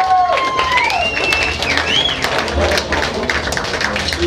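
Audience clapping and cheering, with a high whistle gliding up and down in the first two seconds and voices shouting in the crowd.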